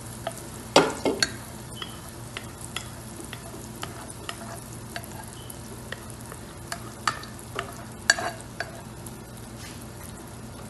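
Tomato puree frying in hot oil in a pot: a steady sizzle broken by frequent sharp pops and crackles of spattering oil, the loudest a little under a second in and about eight seconds in.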